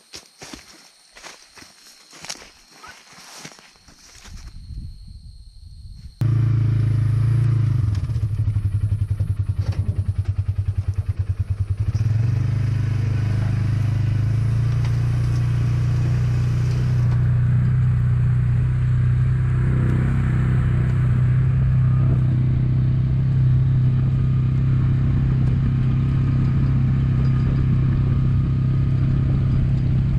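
Footsteps crunching through dry corn stalks, then, about six seconds in, a loud, steady utility-vehicle (Ranger) engine running as the vehicle drives along the field, with a deep hum.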